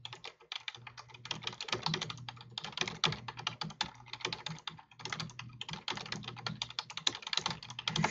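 Typing on a computer keyboard: a quick, dense run of key clicks with a few short pauses, over a low steady hum.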